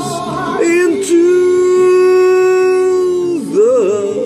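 A man singing a long held note, steady for about two seconds, then wavering up and down in pitch near the end.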